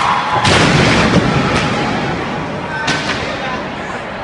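Arena roof and ceiling panels collapsing onto the court: a long crash of falling debris, heaviest about half a second in. Further impacts follow around one and a half and three seconds, and the crash slowly dies away.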